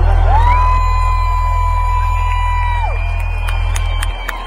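Live sertanejo band ending a song on a long sustained low bass note, with a single high note that slides up, holds for about two and a half seconds and then drops away, over the noise of a cheering crowd. A few sharp clicks come near the end.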